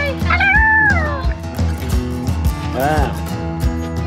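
Background music with a steady beat, over which a child's voice makes two high, meow-like squeals: a longer one rising and falling near the start, and a short one about three seconds in.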